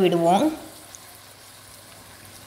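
A woman's voice stops about half a second in. After it comes a faint, steady sizzle of chicken pieces and sliced onion frying in oil in an open pan.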